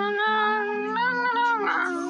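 A high-pitched, voice-like wail held in long, slightly wavering notes, with a short break about a second in.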